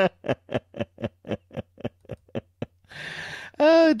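A man laughing hard in a long run of short, evenly spaced pulses, about four a second, that gradually fade, then a gasping breath in near the end.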